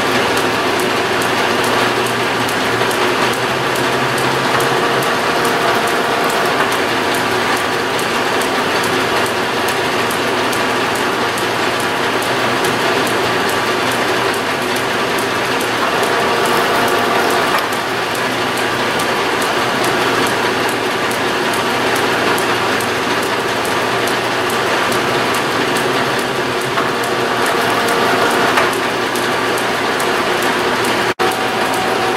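Hamilton metal lathe running under power while turning steel stock, its gear train giving a fast, even clatter over a steady hum.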